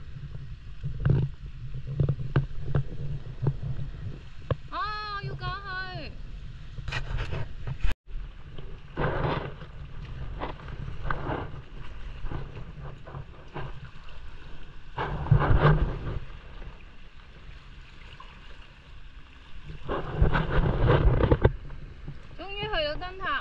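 Wind buffeting the microphone, with sea water washing against rocks in several louder surges. A voice calls out briefly about five seconds in.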